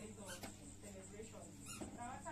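Faint, distant voices of a seated outdoor crowd, with a couple of brief clicks.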